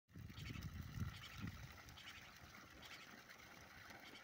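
Thin stream of water pouring from a borewell outlet pipe and splashing on the ground, a faint steady splashing. Low wind or handling rumble on the microphone in about the first second and a half.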